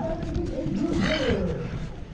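Wind rumbling on an action camera's microphone, with people's voices calling out. One long, falling call comes about a second in.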